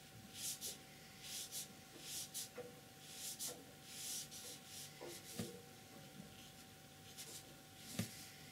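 Paintbrush bristles brushing across paper in a quick series of short strokes for about the first five seconds, then a couple of faint taps.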